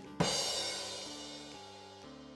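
Rimshot joke sting: a drum hit and a cymbal crash about a quarter second in, the cymbal ringing and slowly fading away.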